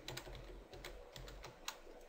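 Faint, irregular clicks of computer keys being tapped, about eight or nine in two seconds.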